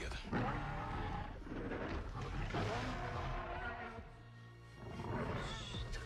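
Movie soundtrack: a dinosaur roaring over music. The roaring eases off about four seconds in and returns just before the end.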